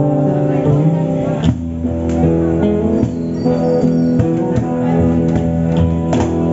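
Guitar playing the song's closing chords, the notes left ringing, with a new strum about one and a half seconds in.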